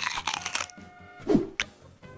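A crunchy bite into a raw mushroom, with the crunch lasting under a second, followed by a brief vocal sound and a click.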